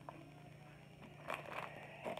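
Faint rustling of paper coupons and sample packets being handled, with a couple of light clicks.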